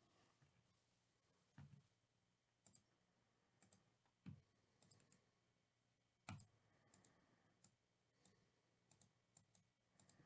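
Faint, scattered computer mouse and keyboard clicks, a few seconds apart at irregular intervals, over near silence.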